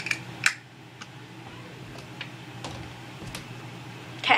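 A few scattered light clicks and taps from small objects being handled, two close together at the start and a louder one about half a second in, over a low steady hum.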